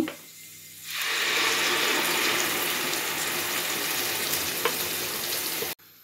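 Wet blended nut-and-spice paste hitting hot oil and caramelised onions in a frying pan, a steady sizzle that starts about a second in and cuts off suddenly near the end.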